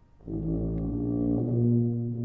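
Tuba coming in about a quarter second in with a low, sustained note, then moving to another low note about midway.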